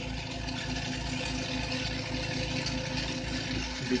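Oxygen concentrators running steadily with a quick, regular low pulsing, under the even hiss of a lit glassworking torch flame.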